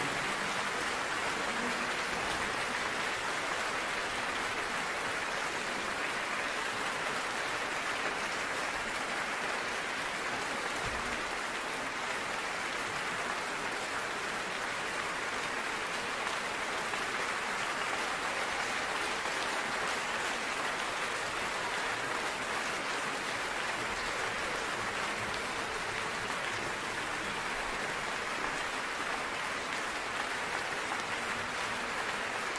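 A large audience applauding steadily, a dense even clapping with no music.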